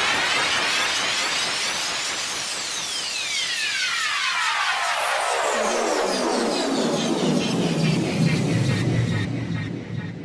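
An edited-in whining sound effect over a rushing noise. It rises in pitch for about two seconds, then falls steadily for several seconds and ends in a low rumble.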